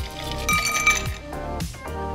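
Background music with a steady beat, over ice clinking against glass as cocktails are poured off their ice.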